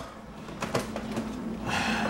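A few faint knocks and clicks of items being moved around inside an open refrigerator, over low room noise.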